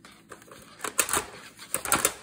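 Sheets of cardstock and patterned paper being handled and slid across a countertop: rustling, with sharp paper snaps and taps about a second in and again near the end.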